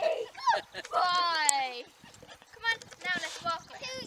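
A dog's long, high whining cry that slides down in pitch, with people laughing around it.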